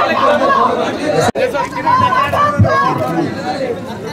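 Several people talking over one another at close range in busy, overlapping chatter. The sound cuts out for an instant a little over a second in.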